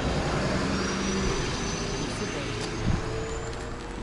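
Motor vehicle noise from the road: a steady engine rumble with road noise that slowly fades.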